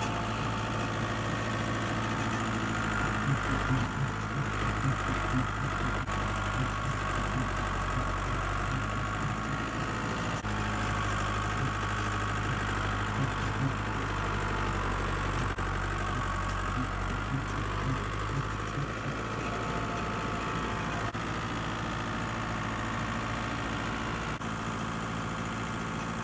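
Tractor engine running steadily as the tractor drives along, heard from the driver's seat close to its upright exhaust stack.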